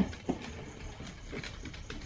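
Faint footfalls of dogs walking past, a few soft taps over quiet room noise.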